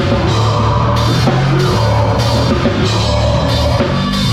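A metalcore band plays live and loud. A Pearl Masters Maple drum kit with Zildjian cymbals is played hard and close up, over heavy guitars and bass that hold sustained low notes.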